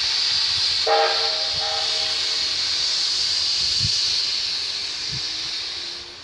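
A steam locomotive letting off steam: a loud, steady hiss that eases off near the end. A short pitched note sounds about a second in.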